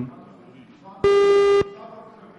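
A single steady buzzer-like beep, about half a second long, starting and stopping abruptly a second in.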